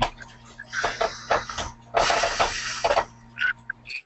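Noise on a conference-call audio line: a steady electrical hum under scattered crackles, with a burst of hiss about halfway through. The hum cuts off at the end.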